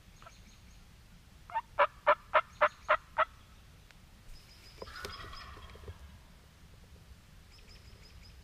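Turkey yelping: a run of seven loud yelps at about four a second, starting about a second and a half in. A fainter, rougher turkey call follows about five seconds in, and small birds chirp faintly.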